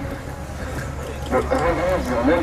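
A voice speaking briefly near the end, over a steady low rumble.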